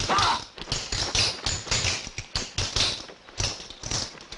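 A quick, irregular run of taps and thuds, several a second: film sound effects of striking and knocking.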